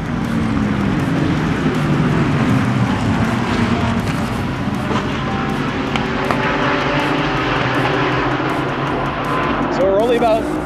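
A pack of GT3 race cars at full throttle together, many engines blending into one loud, dense sound. It jumps up in level right at the start.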